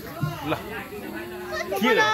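Children's voices calling and chattering, with a high, wavering child's voice near the end.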